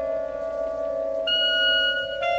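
Chamber ensemble playing sustained held notes. A new high note enters a little past halfway and is held to the end.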